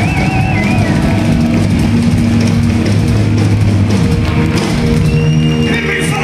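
Live rock band playing loud, with distorted electric guitars and a drum kit. A high wavering note sounds in the first second, and held notes ring near the end as the song nears its close.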